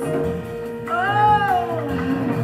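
Live jazz band music over a held note; about a second in, one sliding note rises and then falls over about a second.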